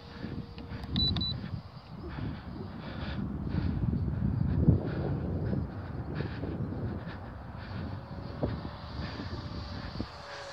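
Electric RC Spitfire model's motor and propeller droning faintly high overhead, the tone fading away early and coming back as a gliding pitch near the end, under gusty wind buffeting the microphone. The lipo packs are short of power, in the pilot's words with hardly any grunt.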